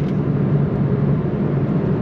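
Suzuki Swift Sport ZC33S's 1.4-litre turbocharged four-cylinder engine running at a steady pitch, heard inside the cabin with tyre and wind noise.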